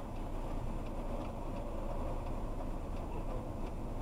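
Car engine running at low speed, heard inside the cabin, with a faint regular ticking of about two to three clicks a second, typical of the turn-signal indicator as the car turns.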